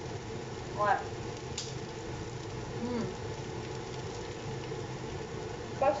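Steady low kitchen background noise with faint sizzling from courgette galettes frying in a pan, and a single sharp click about a second and a half in.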